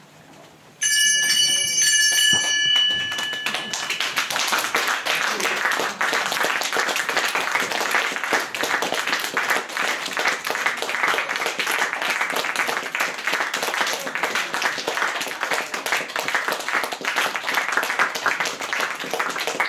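A bright, bell-like chime rings with a few clear high tones about a second in and fades after a few seconds, then audience applause follows and keeps going.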